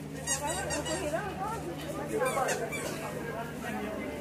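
Crowd of shoppers talking over one another, many voices at once. Short high squeaks come through about a third of a second in and again around two and a half seconds in.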